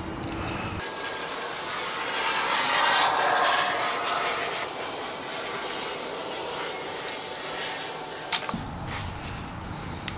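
Hand deburring tool's blade scraping the edges of small freshly turned metal standoffs: a hissing scrape with faint squeals. Light clicks of the part and tool are heard now and then, with a sharper click shortly before the end as the tool is put down.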